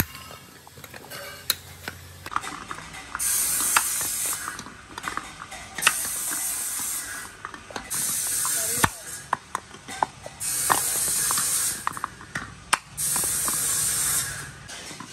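Small treaded tricycle wheels spun by hand, each spin a steady whirring rattle of a second or two, five times over. Sharp taps and knocks of a small hand tool on the wheels come in between.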